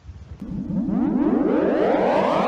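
A synthesized rising sweep: many pitches glide upward together, swelling from about half a second in and still climbing at the end.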